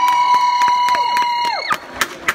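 The live Arabic band's final held high note, steady, over quick regular drum strikes. About three-quarters of the way through it slides down and stops, and scattered claps follow.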